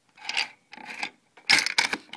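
Draco AK-pattern pistol being handled as its magazine is taken out: three bouts of metal scraping and rubbing, the last, about one and a half seconds in, the loudest and sharpest.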